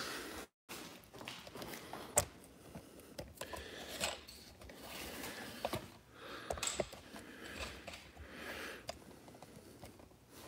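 Faint handling noise of a phone camera being picked up and repositioned: scattered light clicks, knocks and rustles. The sound cuts out completely for a moment about half a second in.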